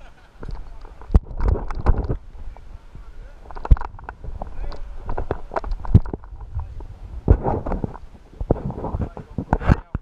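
Handling noise from a hand-held action camera: irregular knocks and rubbing as it is moved and turned, over a low rumble of wind on the microphone.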